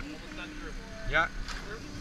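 A small engine running steadily at low level: the power unit that drives the hydraulic rescue tools. A man says "yeah" briefly about a second in.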